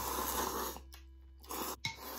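Thick ramen noodles being slurped: a long slurp through most of the first second, then a shorter one near the end, with a sharp click just before the end.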